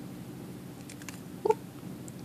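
Faint small clicks of fingers and nails handling a small plastic roll of nail striping tape, over a steady low hum. A woman's short 'ooh' comes about a second and a half in.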